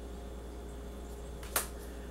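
Quiet room tone with a steady low hum, and one brief sharp click-like sound about one and a half seconds in.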